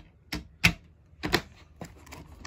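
Sharp hard clicks and clacks of a DVD and its plastic case being handled while the discs are swapped: about four separate clicks, the loudest shortly after the start and a quick double click in the middle.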